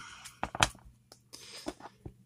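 Cardboard baseball cards being flicked through by hand: a few sharp clicks, the loudest two about half a second in, then fainter clicks and a short soft rustle.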